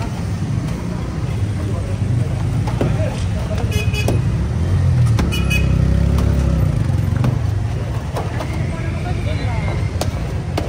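Road traffic running close by, its low rumble swelling in the middle, with two short horn toots about a second and a half apart. A few sharp knocks of bricks being pulled loose from a brick wall by hand.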